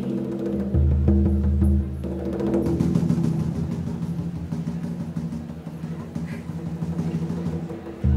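Hand drums struck with bare hands, opening a live band number with quick, rolling strokes over a low held bass tone.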